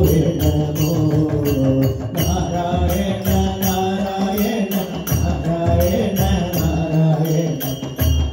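Live devotional bhajan: voices singing a Malayalam hymn, accompanied by tabla and small brass hand cymbals keeping a steady beat of about three to four strikes a second.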